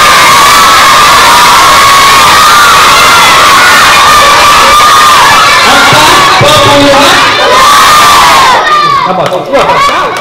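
A large crowd of schoolchildren shouting all at once, very loud, as they clamour to give the answer to a maths question. Near the end it thins out to a few separate voices.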